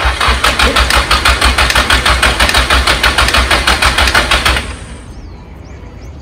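Nissan SR four-cylinder engine being cranked over by its starter with the spark plug wires disconnected, turning over in an even rhythm without firing, to get oil pressure up before a first start. A click runs through the cranking, which the owner suspects is a collapsed hydraulic lash adjuster. The cranking stops a little before the end.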